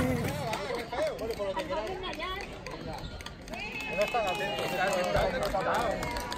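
Several people talking indistinctly in the background, a murmur of overlapping voices with no clear words.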